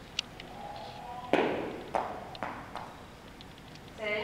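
An obedience dumbbell thrown onto indoor turf: it lands with a sharp knock about a second in, then bounces three more times, each bounce quicker and fainter than the last.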